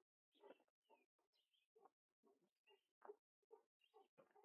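Near silence, with only faint, irregular short sounds coming and going several times a second.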